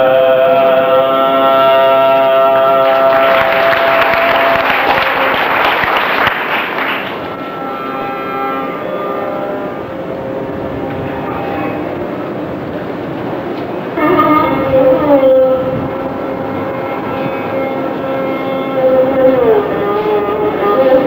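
Carnatic classical music in raga Keeravani: a male voice and violin hold long notes over a tanpura drone, with a dense, noisy clattering stretch a few seconds in. About two-thirds of the way through, the melodic line turns to sung phrases with gliding ornaments, which the violin shadows.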